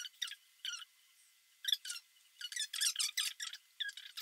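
A woman's voice sped up to a squeaky, chipmunk-like chatter in short irregular bursts, as when footage is fast-forwarded in editing.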